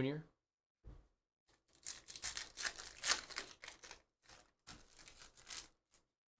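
Glossy chrome trading cards rustling and scraping against each other as a stack is flipped through by hand: a soft thump about a second in, then a run of short rustles.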